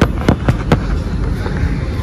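A few sharp clicks or taps in the first second, over a steady low rumble of outdoor background noise.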